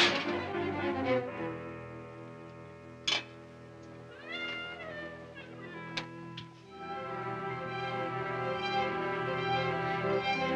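Orchestral film score with brass and a rising glide in pitch about four seconds in. A sharp knock comes about three seconds in and another about six seconds in. From about seven seconds in, fuller sustained strings and horns take over.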